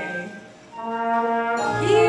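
Live pit band playing music: after a short dip, sustained brass chords swell in about a second in, and a low bass note joins near the end.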